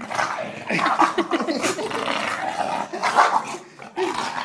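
English bulldog growling and barking as he bites and tugs at a person's shoe in rough play. The growling is loudest from about a second in and eases near the end.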